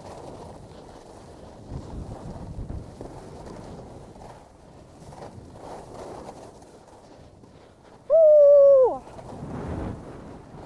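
Skis sliding and carving over groomed snow, with wind rushing on the microphone. Near the end a loud held whoop lasts about a second and drops in pitch as it ends.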